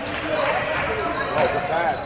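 A basketball bouncing on a gym's hardwood floor, a few sharp knocks over a steady mix of players' and spectators' voices echoing in the hall.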